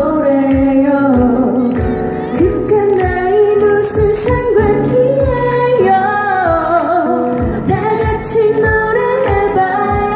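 A woman singing live into a handheld microphone over an upbeat Korean pop backing track with a steady beat, amplified through the stage sound system.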